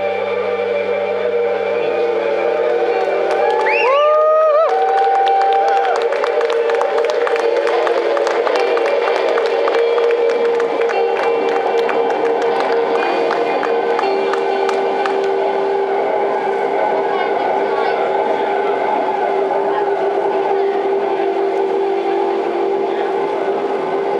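Electric guitars left droning and feeding back through their amplifiers and effects pedals as the song breaks down. Several held tones run throughout, with a rising swoop in pitch about four seconds in, a run of sharp clicks and hits through the middle, and a steady drone carrying on to the end.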